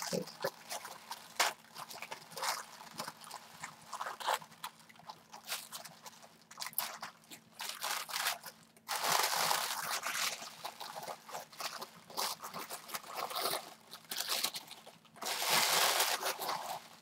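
Pink tissue paper crinkling and rustling in irregular bursts as a taped package is unwrapped by hand, with louder, denser crinkling from about nine seconds in and again near the end.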